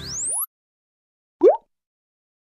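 Motion-graphics sound effects: the tail of an intro sting with a rising whistle-like sweep cuts off about half a second in, then a single short upward-gliding 'bloop' pop comes about a second and a half in.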